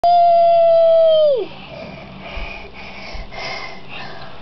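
A long, high vocal note held steady for over a second, then sliding down in pitch and cutting off. After it comes the steady hiss of heavy rain pouring onto a flooded road.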